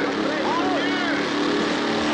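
Several men yelling in alarm with short rising-and-falling cries, over a car engine and the film's music.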